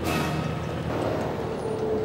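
A heavy vehicle's engine running under background music, with a sudden burst of hiss at the start.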